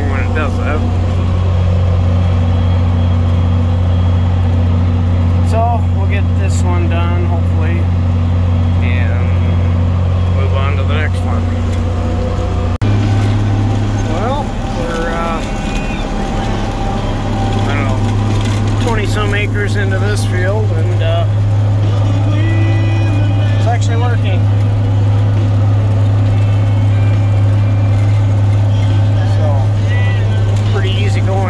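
Diesel tractor engine running at a steady working speed, heard from inside the cab as a low drone. A faint voice comes and goes over it. The drone shifts slightly in pitch about 13 seconds in.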